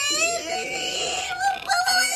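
A person's high-pitched, drawn-out squealing laugh, held as one long note with a brief catch near the end.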